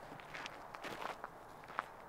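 Faint footsteps on dry grass and dirt, a few soft, unevenly spaced steps.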